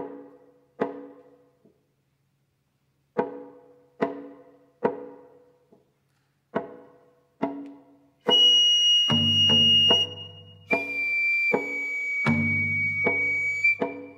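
Shamisen played in slow, sparse single plucked notes, each ringing and fading away. About eight seconds in a Japanese bamboo flute (fue) joins with long held high notes over the plucked strings.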